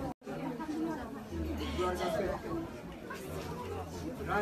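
Several people talking at once in a crowded room, with no other sound standing out. The sound drops out completely for a moment just after the start.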